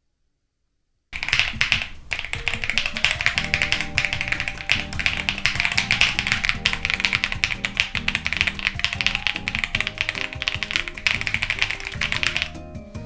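Rapid typing on a lavender mechanical keyboard: dense, quick key clicks that start suddenly about a second in and run on steadily, over background music.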